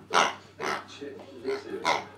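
Rubber chicken-shaped squeaky toy squeaking four times in quick succession as a West Highland White Terrier chews on it, the first and last squeaks the loudest.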